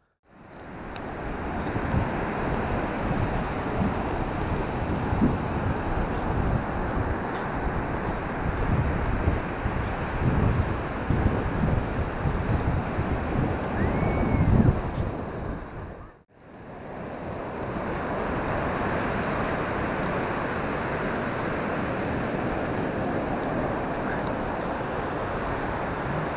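Surf breaking on a sandy beach with wind buffeting the microphone in gusts. About two-thirds through, the sound cuts out for a moment, then resumes as steadier surf.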